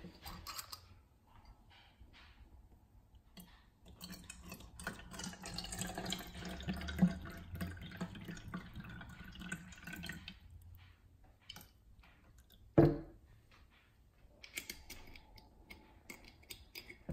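Water poured from a glass bottle into a clear plastic cup, a splashing, trickling pour that starts about four seconds in and lasts about six seconds. A single sharp knock on the table follows a few seconds after the pour stops.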